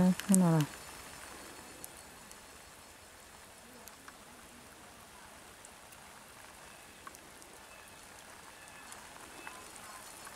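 A voice speaks briefly at the start, then a faint, steady outdoor hiss with a few faint ticks.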